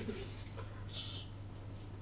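Quiet room tone with a steady low electrical hum, a faint soft rustle about a second in, and a couple of very brief, faint high-pitched squeaks about a second and a half in.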